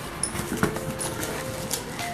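Cardboard and plastic bubble wrap rustling and crinkling in short bursts as a small taped box is torn open by hand and a bubble-wrapped item is pulled out. A few faint held tones sound in the background.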